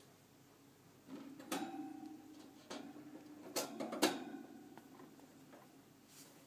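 Handling of a pink plastic-and-wire hamster cage as it is opened: four sharp clicks and knocks over about three seconds, with a low steady tone under them.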